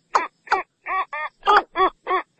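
Watercock calling: a steady series of short notes, each bending up and then down in pitch, about three a second.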